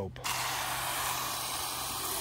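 Hose-end foam cannon on a garden hose spraying soapy water onto a truck's body panels at its maximum soap setting: a steady hiss of spray that starts a moment in.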